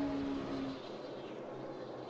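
NASCAR Cup stock cars' V8 engines at full speed, heard through the race broadcast: a steady engine note that fades out about a second in, leaving a fainter engine drone.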